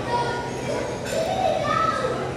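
Background voices of diners in a restaurant, some of them high-pitched like children's, with a light clink of cutlery about a second in.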